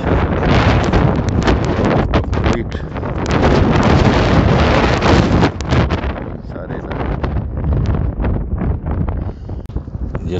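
Strong wind buffeting the microphone, loud for the first five or six seconds and then easing.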